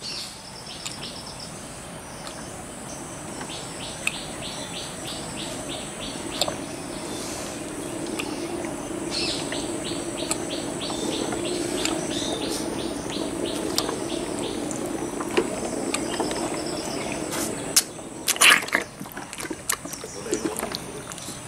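Insects chirping in runs of short, even pulses over a steady high-pitched drone, with the wet sucking and a few sharp slurps of an elephant calf drinking milk from a bottle near the end.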